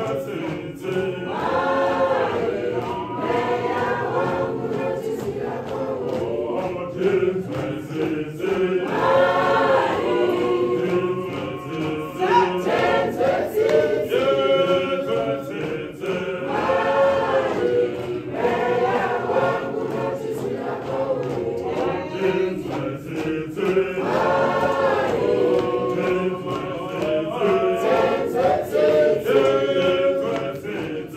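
A church choir singing a processional hymn in harmony, the phrases swelling and repeating about every seven to eight seconds.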